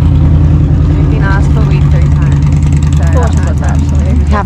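An engine idling with a steady low hum, with faint voices over it.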